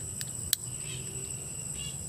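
Insects chirring steadily at a high pitch, with a single sharp click about half a second in.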